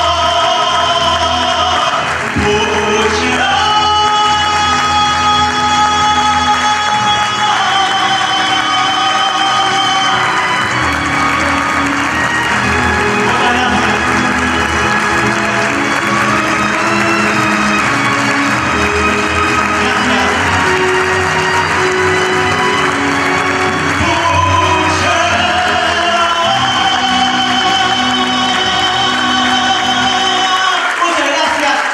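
Live music: a male singer holding long sustained notes over a band's accompaniment, with audience applause starting near the end.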